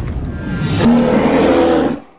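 Logo-reveal music sting: a fading whoosh, then a held synth chord from about a second in that dies away at the end.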